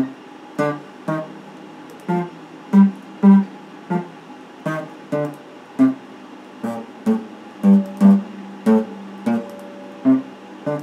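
Solid-body electric guitar played as single plucked notes and short phrases, each note struck sharply and dying away, at an uneven pace of roughly two notes a second.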